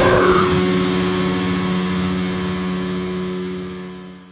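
Heavy metal music ending: the band cuts off about half a second in, leaving a final distorted guitar chord that rings on steadily and slowly fades out.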